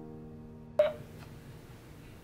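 One short electronic beep from a laptop about a second in, as a video call connects. Held piano notes fade out beneath it.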